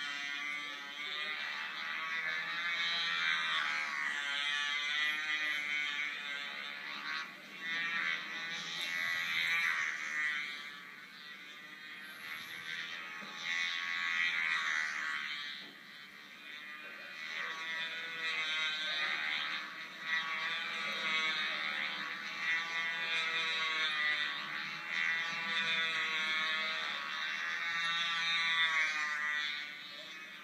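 Two-stroke glow engine of a control-line stunt model airplane buzzing at high pitch as it flies its circles, its pitch wavering and its loudness dipping about every four seconds as the plane comes round. Heard through a television's speaker.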